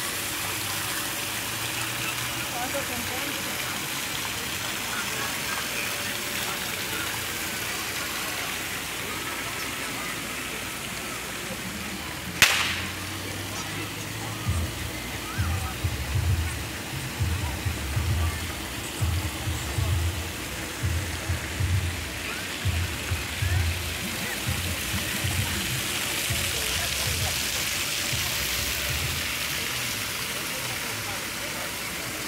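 Steady rushing splash of a plaza water fountain, with a faint murmur of people and a single sharp click about twelve seconds in. Low, irregular thumps run through the middle stretch.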